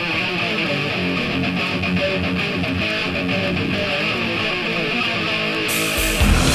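Heavy metal song intro: an electric guitar plays a run of picked notes, with cymbals coming in near the end.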